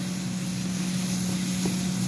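Ground pork and beef with diced onion sizzling in a frying pan, a steady hiss, over a steady low hum.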